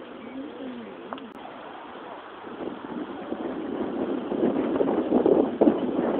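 Wind buffeting the microphone, a rushing noise that builds from about halfway and grows steadily louder. Near the start there are a few short calls that rise and fall in pitch.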